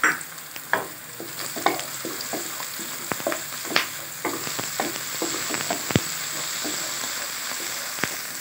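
Onions and garlic-ginger paste sizzling in oil in a kadai, stirred with a wooden spatula that scrapes the pan in short, frequent strokes. One sharper knock of the spatula on the pan comes about six seconds in.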